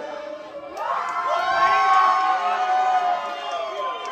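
Bar audience cheering and shouting, many voices at once, swelling about a second in and easing off near the end.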